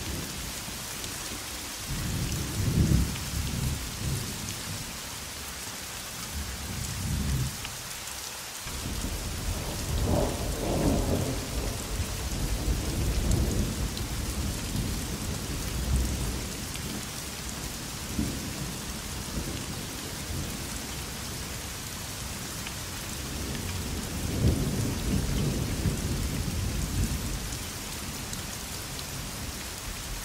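Steady rain with rolling thunder: long low rumbles come in several waves, one a couple of seconds in, a longer one from about nine seconds, and another near the end.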